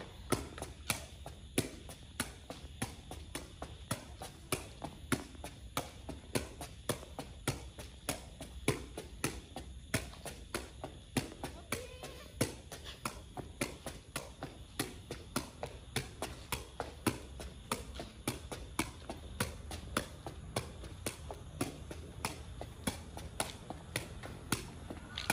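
A woven plastic sepak takraw ball being kicked up again and again, a sharp tap at each touch of the foot in a steady rhythm of about two a second.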